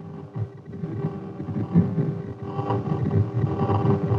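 AN/TPS-25 ground surveillance radar's Doppler audio return played through its speaker: an uneven, fluttering rumble over a steady hum. It is the characteristic return of light wheeled vehicles moving on a road.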